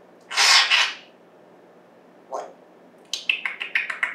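African grey parrot calling: a harsh, noisy squawk about half a second in, a brief faint call near two seconds, then from about three seconds a quick run of short clicking chirps.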